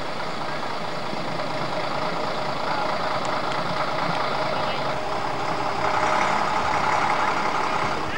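A truck's diesel engine running steadily, getting a little louder about six seconds in.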